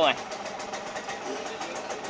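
A small engine idling steadily in the background, with a fast even ticking.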